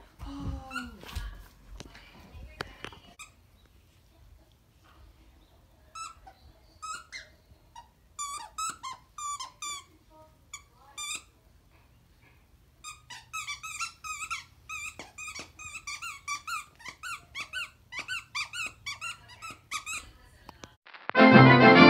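Squeaky dog toy being chewed by a dog: runs of short, rapid squeaks, a first series about a third of the way in and a longer, almost continuous series through the second half.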